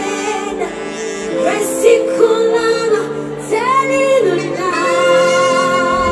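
A woman singing live into a microphone over band accompaniment, with phrases that rise and fall and end on a long held note with vibrato near the end.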